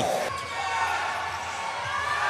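Basketball being dribbled on an indoor hardwood court, with arena crowd noise and background voices.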